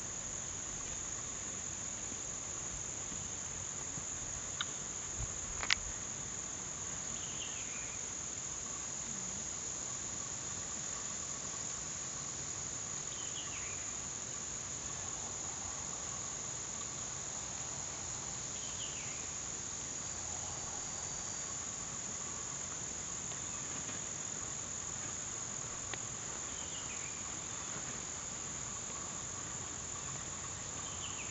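Steady high-pitched chorus of insects droning without a break. A short falling call recurs every five or six seconds, and two sharp clicks come about five seconds in.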